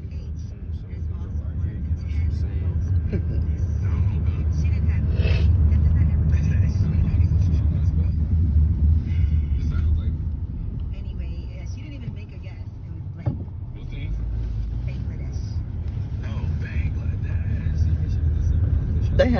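Car driving, heard from inside the cabin: a steady low rumble of engine and road noise, swelling louder in the middle and then easing.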